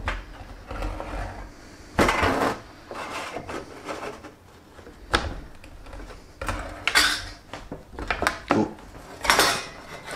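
Hand-lever bench shear cutting thin 0.5 mm brass sheet, with its blades freshly repolished. There is a series of irregular metallic clatters and scrapes as the lever is worked and the sheet flexes, loudest about two seconds in and again near seven and nine seconds.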